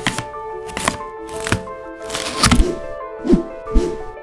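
A hawkbill folding knife cutting the packing tape on a cardboard box, with about six sharp cuts and thuds scattered through as the tape gives and the flaps are pulled open. Steady orchestral background music plays under it.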